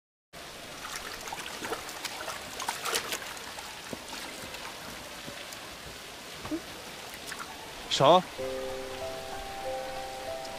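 Water trickling and splashing: a steady wash with scattered small drips and splashes. About eight seconds in comes a short, loud vocal exclamation, then soft held music notes.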